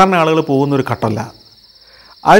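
A man speaking in Malayalam, his voice stopping a little over a second in, over a steady high-pitched cricket trill.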